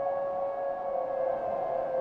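A synthesizer pad holding one steady, sustained note with fainter overtones above it and a soft hiss beneath: Logic Pro's 'Stratosphere' soundscape patch, a creepy-sounding tone.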